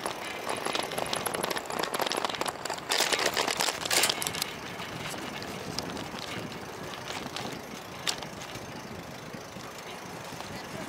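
Wind and rolling noise on a bicycle-mounted action camera's microphone while riding, crackly and loudest in a gust about three to four seconds in. It then settles to a calmer steady rush, with one sharp click a couple of seconds before the end.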